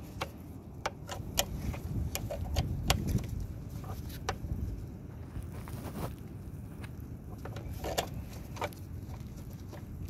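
Wrench working a 10 mm bolt loose on a mower's fuel pump mount: scattered, irregular sharp metal clicks and taps. A low rumble of wind on the microphone underneath, strongest a couple of seconds in.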